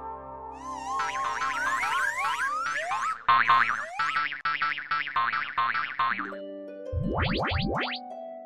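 Cartoon sound effects with music: a wobbling warble, then a string of rising boing-like glides, a quick run of short clipped popping notes, and several fast rising sweeps near the end.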